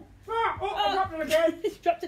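A person's voice talking, with no music playing.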